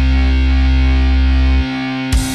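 Distorted electric guitar and bass holding a single sustained chord, the final held chord of a heavy rock song. The lowest notes cut off about a second and a half in, leaving the guitar ringing.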